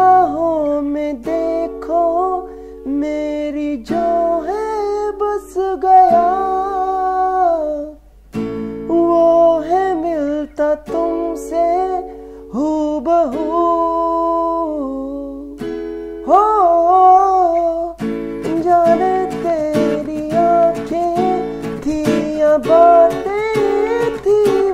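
A man singing a Hindi song while strumming chords on an acoustic guitar. The song turns on A major, F-sharp minor, D major and E major. The strumming grows fuller and busier in the last quarter.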